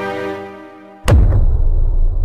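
Intro music: a sustained chord fades out, then about a second in a sudden deep boom hits, followed by a low rumble.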